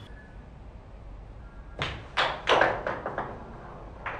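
A carrom shot: the striker is flicked across the wooden board and clacks against the carrom men and the board's wooden frame, a quick cluster of sharp knocks starting about two seconds in and dying away over a second or so.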